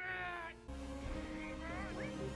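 BB-8 droid's electronic warbling chirps: a wavering call at the start and a short rise-and-fall chirp near the end, over background music and a low rumble that comes in before the first second.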